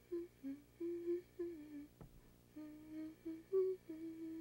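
A young girl softly humming a slow tune, one short held note after another with small breaks between them. A faint click about halfway through.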